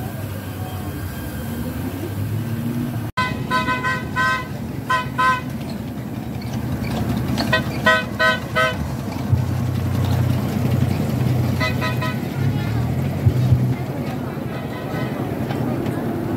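Short toots of a mini amusement-park train's horn, sounded in several bursts of two to four quick blasts as the train passes. Voices and general crowd noise continue underneath.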